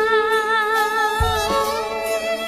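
Live band music: one long held melody note with vibrato over the band, with a low drum hit a little past halfway.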